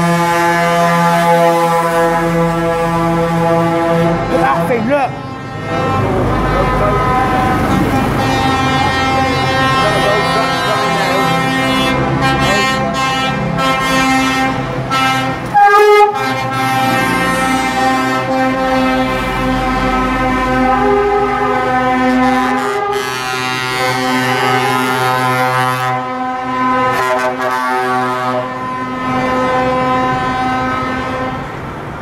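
Lorries in a convoy driving past, sounding their horns almost without a break, with several horn tones overlapping and changing. The loudest blast comes about 16 seconds in, as a red Volvo F88 passes close.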